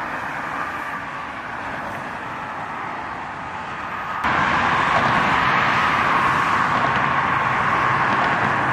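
Steady hiss of road traffic in a city, with no single vehicle standing out. A little past halfway it abruptly becomes louder and a faint low hum joins it.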